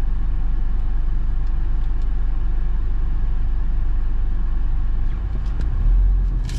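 Car engine running, heard from inside the cabin as a steady low rumble, growing a little louder near the end.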